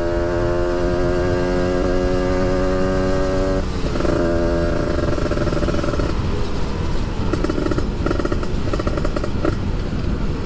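Kawasaki Ninja 150 RR two-stroke single-cylinder engine running at steady riding revs under the rider, with wind rush on the microphone. The engine note shifts about four seconds in, and near the end it turns choppy and uneven.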